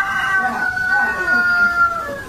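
Rooster crowing: one long held note, sagging slightly in pitch near the end.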